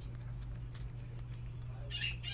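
Room tone: a steady low electrical hum with a few faint clicks.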